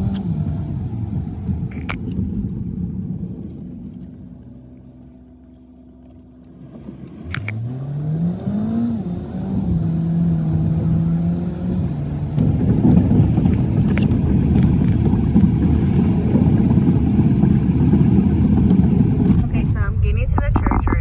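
Car driven at night, heard from inside the cabin. About four seconds in the engine note drops and quiets, as when slowing to a stop. About seven seconds in it rises in pitch as the car pulls away, then settles, and low road noise grows louder over the last several seconds.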